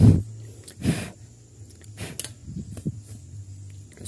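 A wire fan guard tossed down onto the ground: a loud rustling clatter at the start and another about a second later, then a few light knocks, over a low steady hum.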